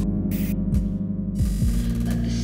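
Live electronic darkwave music from hardware synthesizers: a low, droning synth bass with repeated drum-machine kick drums, while the brighter hi-hat-like noise drops out about one and a half seconds in, leaving only the low end.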